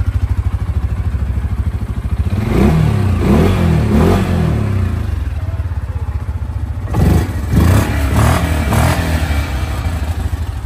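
Yamaha Kodiak 450 ATV's single-cylinder engine blipped with the thumb throttle in two bursts of several quick revs, over the steady idle of the two running ATVs.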